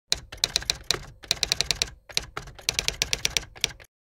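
Rapid typewriter-like keystroke clicks in three quick runs of about seven or eight a second, with two short pauses, stopping abruptly near the end.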